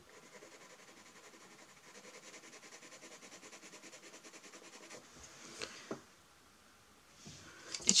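Castle Art colored pencil shading on textured drawing paper in quick, even back-and-forth strokes, about five a second, faint. A couple of light knocks come about five and a half seconds in, then a moment of quiet.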